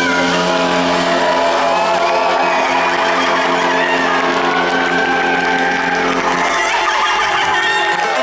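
Live band music through a large PA: sustained low notes under electric guitar and keyboard, with the crowd cheering. The low notes drop out near the end.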